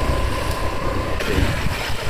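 A motorbike riding along a road, its engine and the rush of wind on the microphone making a steady low rumble.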